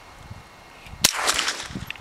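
A single rifle shot about a second in, with a short echo trailing after it. No target is heard breaking: the shot misses.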